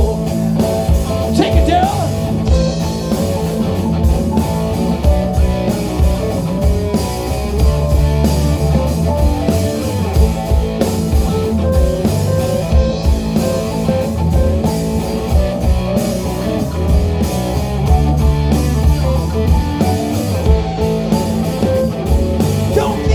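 Live rock band playing: electric guitar, bass, keyboard and drums, in a stretch of the song without vocals.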